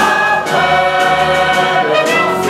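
Music: a group of voices singing long held notes together over band accompaniment.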